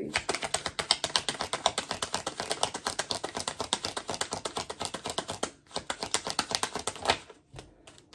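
Tarot cards being shuffled by hand: a rapid run of light card clicks for about five seconds, a brief pause, then a short second run.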